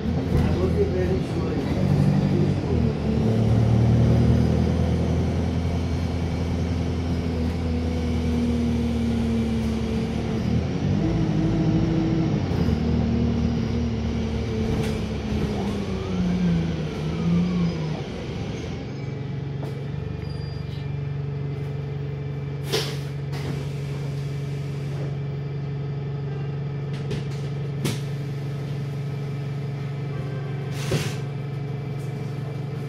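Wright StreetLite single-deck bus's diesel engine heard from inside the cabin, its note rising and falling as the bus pulls along and changes gear, then slowing and settling to a steady idle as the bus stands. While it idles there are short sharp air hisses from the air brake system.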